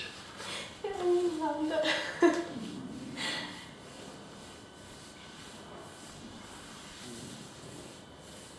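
A person's wordless voice for the first few seconds: a drawn-out sliding vocal sound and breathy, snorting laughter. After that only quiet room tone.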